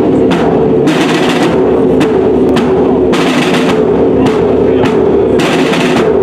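Music with drums: a held, droning melody over steady drumming, with loud crashing hits about once a second.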